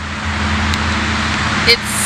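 Steady highway traffic noise, 'city loud': a constant rushing haze with a low hum beneath it.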